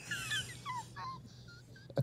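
A woman's high-pitched, wheezy laugh: breathy gasps with thin squeals that slide up and down, tapering off toward the end.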